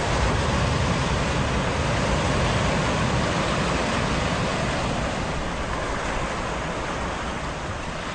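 Steady, surf-like rushing noise of a TV station ident's sound effect, slowly fading.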